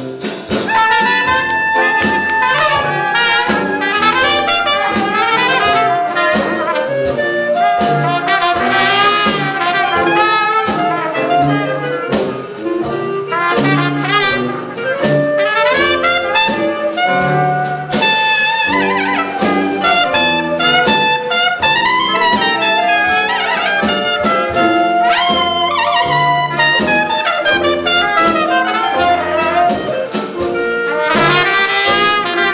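Traditional New Orleans-style jazz band playing an instrumental chorus of a blues, with trumpets leading over tuba and drums.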